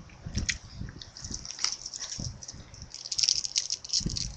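Close-up chewing of a soft chewy candy: irregular wet mouth clicks and smacks, thickening into a quick run of crackly clicks near the end.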